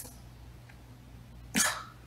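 A single short cough about one and a half seconds in, after a pause that holds only a faint low hum.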